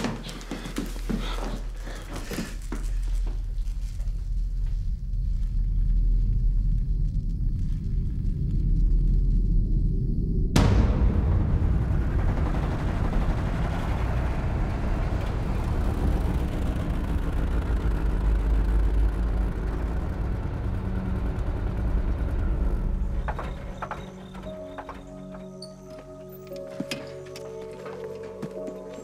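Horror film score and sound design: a deep low rumble builds, then a sudden loud boom hits about ten seconds in. A long dense wash of sound follows, which drops away near the end to quieter sustained musical tones.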